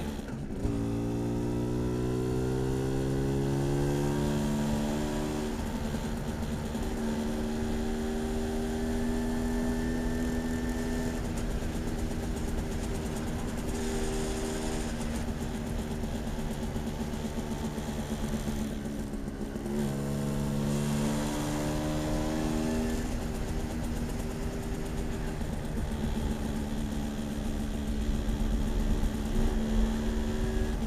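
Polini-tuned moped engine running under way: revs climb over the first few seconds, then hold steady. About two-thirds of the way through the engine eases off briefly and picks up again. Low wind rumble on the microphone grows near the end.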